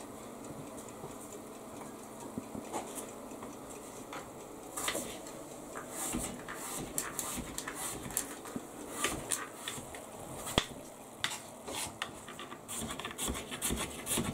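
Kitchen knife cutting an apple into batons, the blade tapping the work surface in short, irregular clicks.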